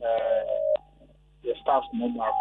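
A voice heard over a telephone line, thin and cut off in the highs. There is a short pause of near silence about a second in, and then the voice resumes.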